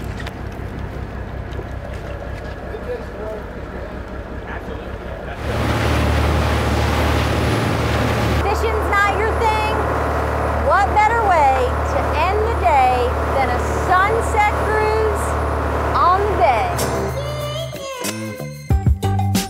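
Boat engine droning steadily, then louder together with a rush of wind and water about five seconds in. From about eight seconds in, people's voices call out over it.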